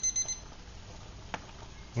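Digital thermometer-timer alarm beeping with high, rapid pulses, signalling that the water has reached the 212°F boil. The beeping cuts off about a third of a second in as it is switched off, and a faint click follows about a second later.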